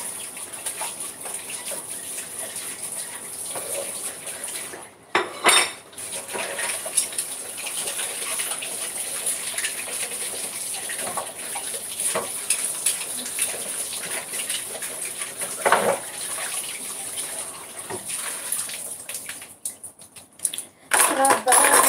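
Dishes and cutlery clinking and clattering as they are washed at a kitchen sink, with water running, and two louder clatters, about five seconds in and again near the sixteen-second mark.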